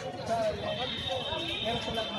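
Indistinct voices of people talking in the background, with a faint, steady high-pitched tone that comes in shortly after the start.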